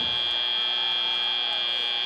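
FIRST Robotics Competition field's end-of-match buzzer sounding one long steady tone, signalling that match time has run out.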